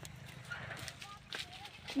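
A quiet stretch with faint, low voices in the background and a few soft clicks spread through it.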